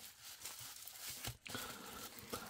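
Faint crinkling and rustling of plastic bubble wrap as it is cut and pulled open with scissors, with a few small clicks.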